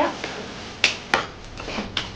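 Four short, sharp clicks or taps spread over about a second, over quiet room tone.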